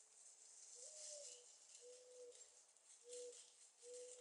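Faint, low cooing bird call: one note that slides up and back down, then three level notes about a second apart.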